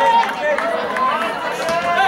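Many voices at once: spectators and players chattering and calling out over one another, with no single voice standing out.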